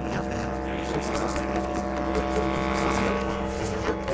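Bass clarinet with live electronics playing a dense, sustained drone of many steady pitches over a constant low hum. It brightens in the middle and eases off toward the end.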